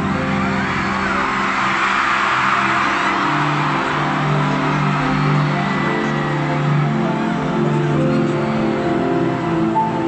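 Concert intro music through an arena sound system: long held synthesizer chords changing every second or two. A rushing noise swells over them in the first few seconds and then fades.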